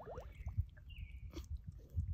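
Metal ladle scooping through a shallow, muddy puddle: faint wet squishing and a few small knocks, one sharper knock just past the midpoint, over a low rumble.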